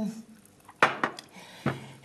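Two sharp clinks of tableware on a dining table, the louder a little under a second in and a lighter one under a second later.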